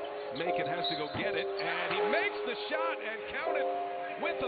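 Live arena sound of a basketball game: shoes squeaking on the court in short rising and falling chirps over crowd noise, with some steady held notes underneath.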